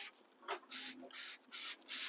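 Hand-pumped plastic trigger spray bottle misting a plant's leaves: about five quick hissing squirts, roughly two a second.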